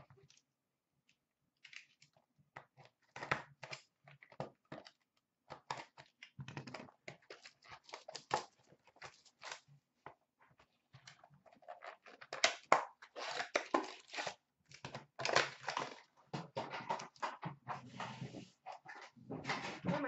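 Foil trading-card pack wrappers being torn open and crumpled by hand: irregular crackling and crinkling rustles, sparse at first and busier from about halfway.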